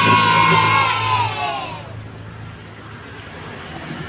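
A group of children cheering in one long held cry that falls away and fades out about two seconds in, followed by a quieter low steady hum.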